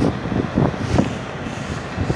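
Footsteps on wet tarmac, about one every half second, over a steady hiss of heavy rain.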